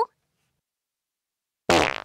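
Near silence, then one short cartoon fart sound effect near the end.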